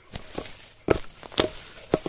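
A machete blade chopping into garden soil, about five sharp strikes roughly half a second apart, digging up a plant by its root. A steady high insect trill runs behind.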